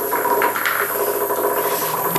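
Several Hexbug Nano vibrating toy bugs buzzing as they skitter across a tile floor, a steady rasping buzz.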